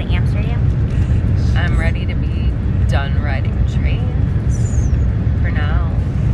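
Steady low rumble of a moving passenger train, heard from inside the carriage, with short bursts of voices over it.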